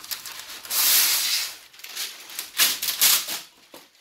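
A sheet of parchment paper being pulled off its roll and torn from the box, crinkling and rustling in two loud bursts: one about a second in, lasting nearly a second, and a shorter one past the middle.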